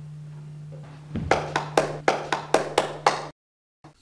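Hand claps, about four a second, starting about a second in and cutting off abruptly near the end, over a steady low electrical hum from the old recording.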